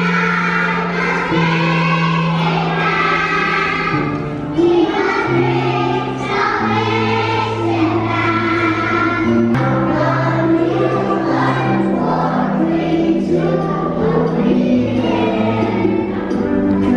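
A group of young children singing a song together over an instrumental accompaniment, with held bass notes that change every second or so.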